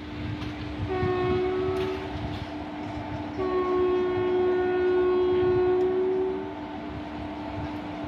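Indian Railways electric locomotive sounding its horn twice, a short blast about a second in and then a long blast of about three seconds, as it hauls LHB coaches slowly through the station. Under the horn is the train's steady low hum and rumble.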